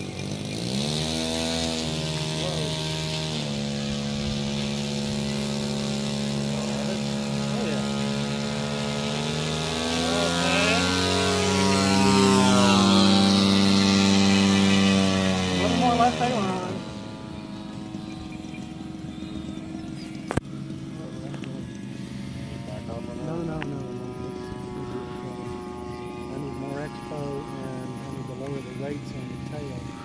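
DLE-35 single-cylinder two-stroke gas engine of a radio-controlled Aichi D3A 'Val' scale model in flight. Its note climbs in pitch and holds steady, swells to its loudest, then drops in pitch and fades about sixteen seconds in, running on as a fainter, steady drone. A single sharp click sounds about twenty seconds in.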